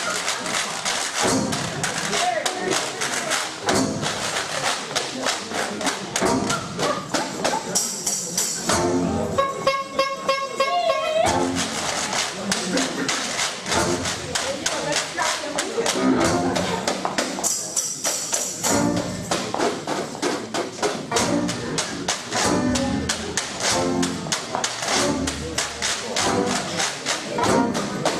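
Traditional New Orleans-style jazz band playing a second-line number: horns, banjo, string bass and drums over a steady beat.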